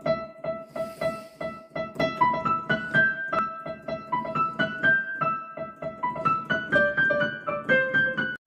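Digital piano played in quick, even notes: one note repeated steadily under a higher melody that climbs and falls in steps.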